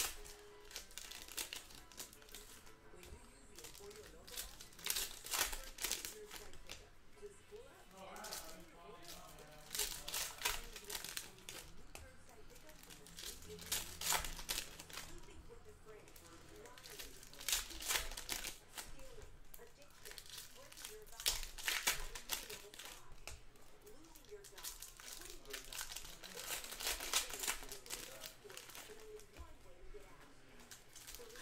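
Foil wrappers of Panini Contenders football card packs crinkling and tearing as they are opened by hand, in short bursts of crackle every second or two.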